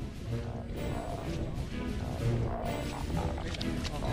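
Large yellow croakers crowded in a tightening net, croaking with a low, repeated 'gu-gu-gu'. This is their call when they sense danger, and a strong call is taken as a sign of good-quality fish. Background music plays underneath.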